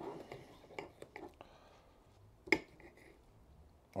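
Faint sound of a knife cutting through a cooked pork chop, held with a fork, on a ceramic plate. A few soft clicks come around a second in, and one sharper click of metal on the plate comes about two and a half seconds in.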